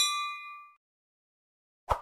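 A bright, bell-like notification ding, a sound effect that rings out at once and fades within less than a second. A short click follows near the end.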